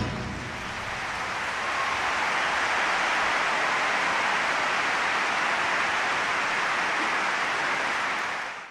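Large audience applauding steadily, swelling a little over the first two seconds.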